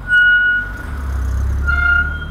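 Two short blasts of a loud, steady, high-pitched horn tone: one about half a second long at the start and another beginning near the end, with a low vehicle rumble between them.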